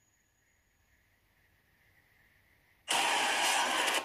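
Near silence for about three seconds, then a sudden steady rushing noise for about a second that stops abruptly.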